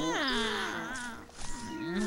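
Voice-acted animal cries from cartoon hyenas: a whine falling steeply in pitch right at the start, then a shorter, lower cry near the end.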